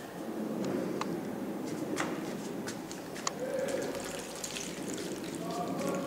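Liquid from a plastic jar of fermented melon mixture being poured and trickling, with several sharp clicks and knocks of plastic in the first few seconds.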